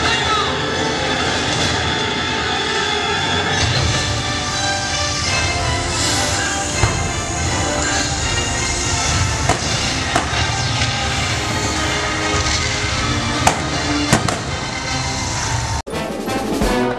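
Continuous show music with a few sharp bangs scattered through it, from pyrotechnic fire blasts in a live stunt show. It cuts off suddenly just before the end.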